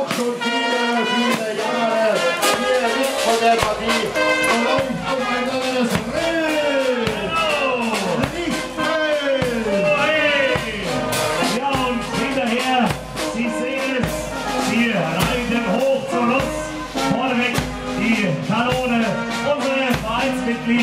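Youth marching band playing live: trumpets, tubas and clarinets with many falling slides in the tune, over a steady bass drum beat that comes in a couple of seconds in.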